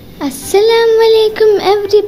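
A child's voice singing a short phrase, starting with a long held note and then a shorter line near the end.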